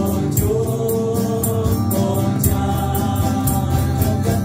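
Live Christian worship song sung in Vietnamese: a man singing lead into a microphone over acoustic guitar and keyboard, with a steady beat.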